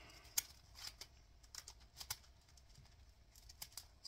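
A clear plastic budget binder being set down and handled: faint plastic crinkling with scattered light clicks and taps, the sharpest about half a second in.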